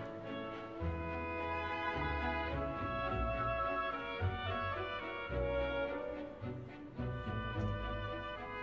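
Orchestra playing classical music, violins to the fore with some brass, the sustained notes changing every second or so.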